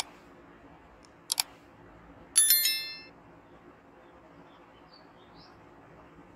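Sound effects of a like-and-subscribe animation: a mouse click, a double click about a second later, then a bright bell chime a little over two seconds in that rings out and fades within about half a second.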